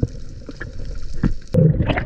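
Underwater sound from a diving camera: muffled water rumble with scattered clicks and ticks, and a heavy thump about a second and a half in.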